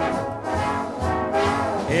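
Big-band brass section, trombones and trumpets, playing an instrumental fill between the sung lines of a swing song.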